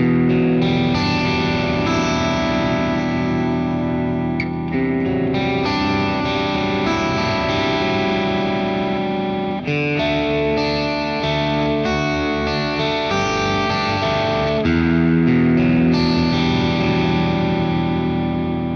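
PRS SE Custom 24-08 electric guitar playing arpeggiated chords through light overdrive and delay, so the notes ring on and overlap. Both pickups are split to single coil in the middle position, giving an 80s-style tone. The chord changes about every five seconds.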